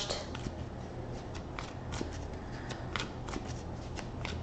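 Tarot cards being shuffled and handled by hand: a quiet, irregular run of small card clicks and flicks.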